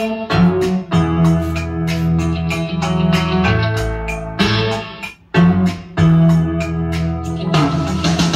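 Pop song with guitar and keyboards played from a CD through a 1959–60 Bell Carillon series vacuum-tube amplifier and loudspeakers, heard in the room, with a brief drop in level about five seconds in.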